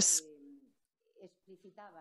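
Speech only: a woman's drawn-out "yes" trailing off with falling pitch, a short pause, then faint, hesitant voice sounds as she picks up her sentence again.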